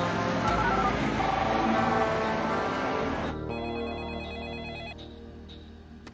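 Background score music that cuts off abruptly about three seconds in. It gives way to a telephone ringing with an electronic trill, which grows fainter toward the end.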